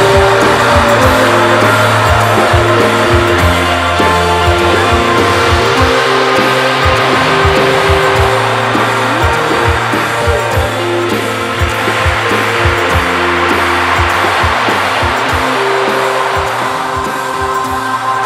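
Rock band music: a dense, sustained wash of guitars over bass, with steady drum hits.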